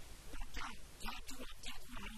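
An elderly man speaking into a handheld interview microphone.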